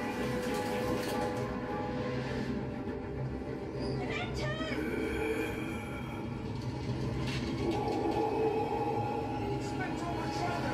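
The ride's soundtrack, sustained music over the steady low rumble of a train compartment. About four seconds in there is a brief, quickly wavering high sound.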